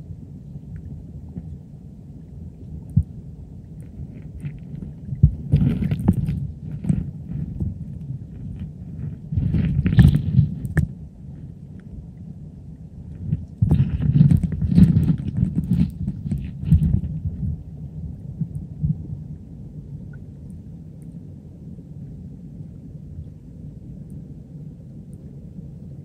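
Stream water heard through a camera held underwater: a steady, muffled low rumble. Three spells of louder knocking and scraping come about five seconds in, around ten seconds, and between fourteen and seventeen seconds.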